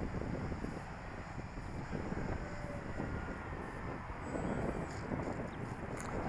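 Steady wind noise on the microphone over the faint, distant whine of a Dynam F4U Corsair electric RC model plane's motor as it comes in to land.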